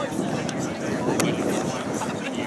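Indistinct chatter of a group of people, over a low steady rumble.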